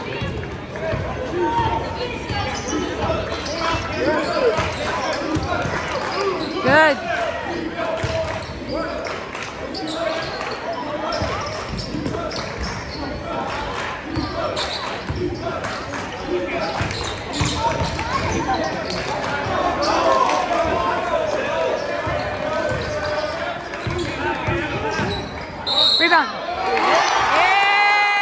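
A basketball game in a school gym: the ball dribbling on the hardwood court among players' and spectators' voices and shouts, echoing in the large hall. A short high-pitched note sounds near the end.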